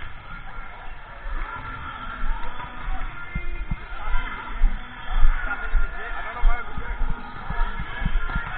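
Indistinct chatter and calls of many players echoing in a large gym hall, with scattered dull low thumps.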